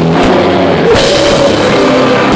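A rock band playing live and loud: a drum kit with cymbals and a guitar, with a cymbal crash about a second in.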